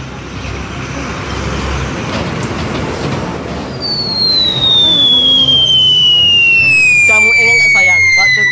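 A rushing noise, then about four seconds in a loud high-pitched whistle that glides slowly down in pitch for about five seconds. A man's voice wails near the end.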